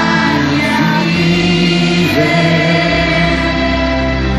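Live orchestral pop ballad with sustained sung notes over the orchestra, held steady without a break.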